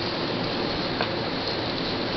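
A steady, even rushing hiss with no speech, with one small click about halfway through.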